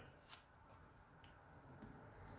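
Near silence with faint handling noise: a metal spoon scooping baking soda from its cardboard box, with one light click about a third of a second in.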